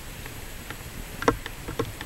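Footsteps crunching on a gravelly path, one step about every half second, starting a little over a second in.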